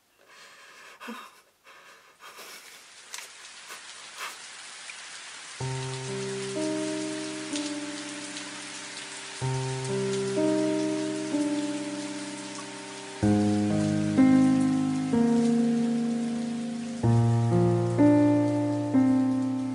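Steady rain hiss, with a few clicks in the first seconds. About six seconds in, slow music joins it: a chord struck roughly every four seconds, each one fading away after it sounds.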